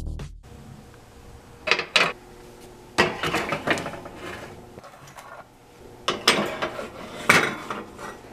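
Metal muffin tins clattering and scraping on wire oven racks as they are slid into the oven, with several sharp knocks.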